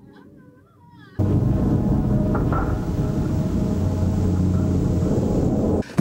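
Loud horror-movie soundtrack music that starts suddenly about a second in, heavy in deep low tones, then cuts off abruptly just before the end.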